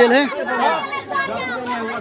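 Several people talking over one another in a heated argument.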